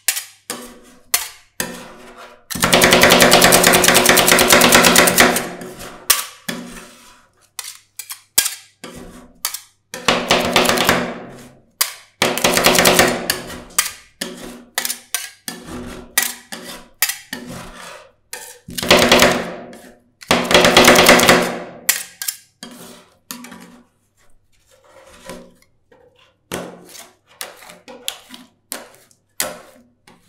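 Two metal spatulas chopping ice cream on a frozen steel cold plate: several long runs of rapid metal-on-metal chopping with a ringing from the plate, broken by single taps and scrapes of the blades. Near the end the blades scrape as the mix is spread flat.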